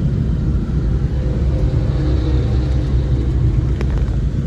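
Steady low rumble of engine and road noise inside a moving van's cabin, with one sharp click near the end.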